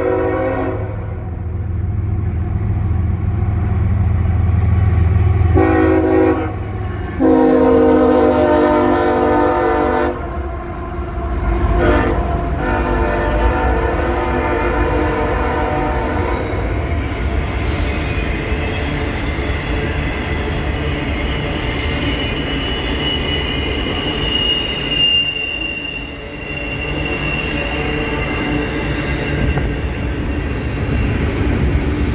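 Double-stack intermodal freight train passing: the diesel locomotive's multi-chime horn sounds in several blasts over the engine rumble, with one ending right at the start, a short blast about six seconds in, a longer one right after it, and a brief toot about twelve seconds in. Then the container cars roll by with a steady rumble of wheels on rail and a thin high wheel squeal through the second half.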